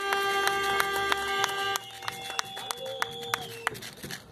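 Audience clapping, a rapid patter of claps. Over it a steady pitched tone is held for about two seconds from the start, and a shorter one sounds near the end.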